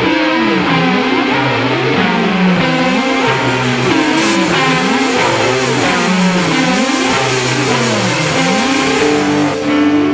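Jazzmaster electric guitar played along with the band's recording, in CGDGBB alternate tuning. The guitar figure slides down and back up in pitch about once a second, over and over. Just before the end it gives way to held chords.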